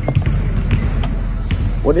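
Basketballs bouncing on a hardwood court in a large, echoing arena, a scatter of irregular thuds.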